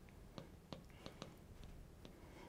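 Near silence with faint, irregular ticks and light strokes of a marker writing on a glass lightboard.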